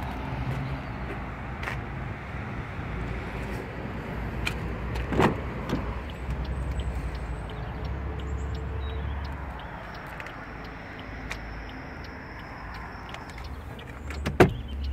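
Steady outdoor background noise with a low rumble that swells for a few seconds in the middle. A sharp click about five seconds in comes from a car door being opened, with a few fainter clicks around it.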